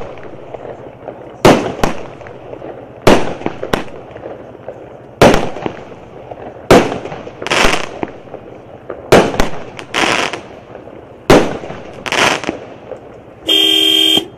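A 0.8-inch 9-shot fireworks cake firing one shot after another, about every one and a half to two seconds. Each shot is a launch thump followed within a second by the sharp bang of the shell bursting, and some bursts trail a short crackle. Near the end a loud steady horn-like tone sounds for about half a second.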